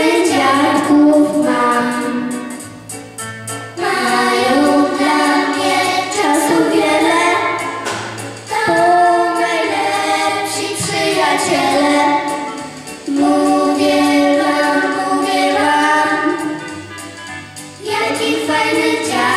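Children singing a song, in sung phrases of about four to five seconds with short breaks for breath between them.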